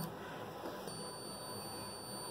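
Low, steady background hiss with a faint, thin, high-pitched steady tone through the second half.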